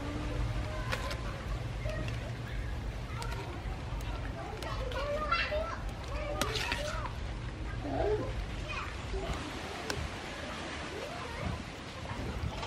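Children's voices calling and chattering in the background, in short scattered bursts, over a low steady hum that fades near the end.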